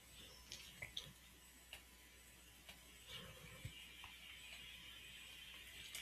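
Near silence: room tone with a few faint computer-mouse clicks in the first three seconds, then a faint steady hiss.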